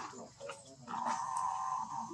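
A baby macaque's long, high whimpering cry begins about a second in and holds a steady pitch. Faint rustling and clicks come before it.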